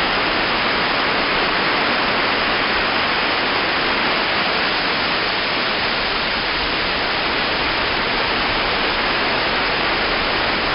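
Heavy rain falling in a steady, even hiss.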